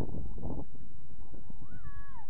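Wind buffeting the microphone in the first half-second, then about a second and a half in a short, pitched animal call that rises and then falls in a wailing glide.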